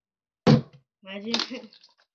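A plastic water bottle landing after a flip: one sharp knock about half a second in, followed by a short laugh and a couple of words.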